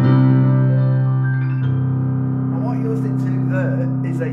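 The Yamaha B2 SC2 silent piano's built-in digital piano voice, a sample of Yamaha's CFX concert grand, heard through a powered speaker from the headphone socket: a low chord is struck and held, shifting to a new chord about one and a half seconds in and left to ring.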